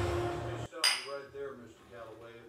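A low steady rumble from a movie soundtrack cuts off suddenly, and a moment later a drinking glass gives one sharp clink with a brief high ringing after it.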